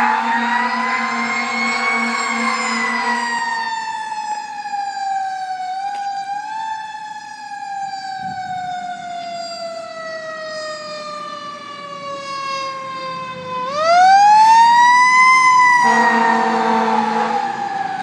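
Fire engine siren wailing: it rises and then winds down slowly over about ten seconds before winding up sharply again near the end. Steady blasts of the truck's horn sound over it at the start and again near the end.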